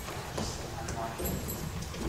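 Footsteps on lecture-theatre steps, a run of irregular hard steps and low thuds, with faint murmured voices behind them.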